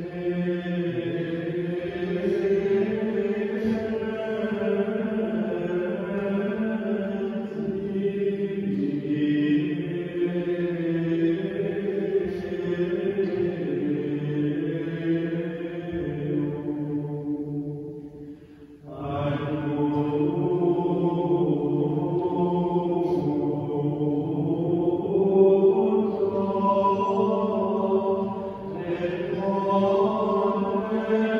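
Monks chanting one sung line, held notes moving slowly in pitch. The chant breaks off briefly about two-thirds of the way through, then carries on.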